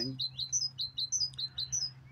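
A small songbird singing a fast, repeated phrase of short high chirps that alternate between a higher and a lower note, about a dozen in under two seconds, over a steady low background hum.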